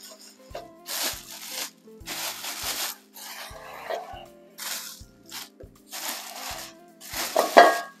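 Black plastic garbage bag crinkling and rustling in repeated bursts as a gloved hand works it open, with a few light knocks. A short voice-like sound comes near the end.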